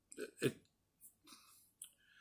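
A man's halting speech: a short low syllable or two, then faint breaths and a small mouth click.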